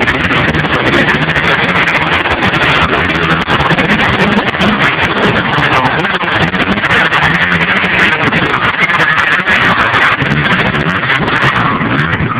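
A pack of motocross dirt bikes racing past close by just after the start, many engines revving at once. The sound is loud and continuous.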